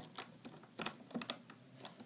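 A handful of light, irregular clicks from a plastic hook and rubber bands tapping against the pegs of a Rainbow Loom as bands are looped.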